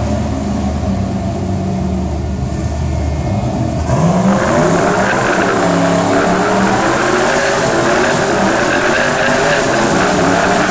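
Turbocharged drag-race car engines idling, then about four seconds in one revs up hard, its pitch climbing, and keeps running loud at high revs.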